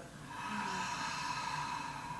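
A woman's long, audible exhale through the mouth, sighing out a deep breath held at the top of the inhale. It begins about a third of a second in and fades slowly over more than a second and a half.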